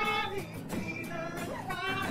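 A male voice singing long, held notes that glide between pitches, over acoustic guitar and drum accompaniment.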